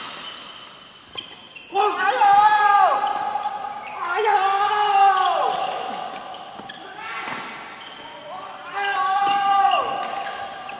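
People shouting three drawn-out, high-pitched calls that fall in pitch at the end, in a large echoing hall. Between the calls come a few sharp clicks of racket hits on the shuttlecock.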